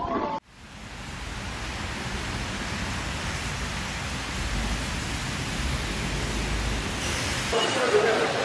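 Steady hiss of heavy rain falling on a city street, cutting in abruptly about half a second in, with a low rumble underneath.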